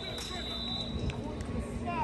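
Scattered voices calling and talking across an outdoor football practice field, with a steady high tone during about the first second.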